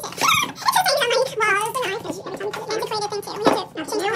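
People's voices talking; the words are not made out.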